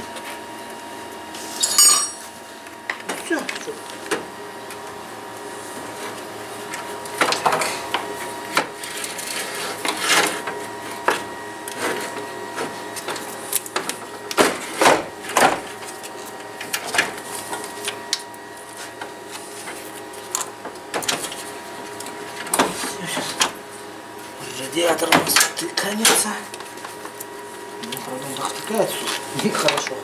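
Clicks, knocks and clatter of car parts and hoses being handled, with a steady hum in the background and a few bits of indistinct talk.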